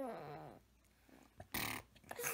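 A baby's drawn-out coo that slides down in pitch and trails off about half a second in, followed by a short breathy sound near the end.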